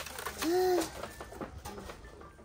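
A short hummed "mm" from a person's voice about half a second in, opening after a sharp click, with a few faint clicks of items being handled later on.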